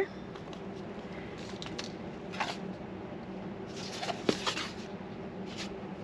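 Chipboard and fabric being handled on a craft cutting mat, with soft rustles and scrapes and a small cluster of clicks and taps about four seconds in, as a hand hole punch is worked through the board and fabric.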